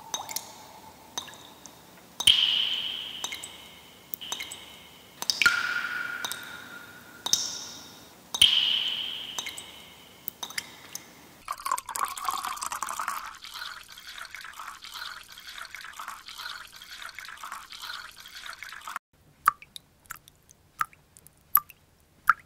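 Water drops falling into water: single plinks with a ringing, fading tone, one every second or two, then a steadier stretch of trickling from about halfway in, and a few faint small drips near the end.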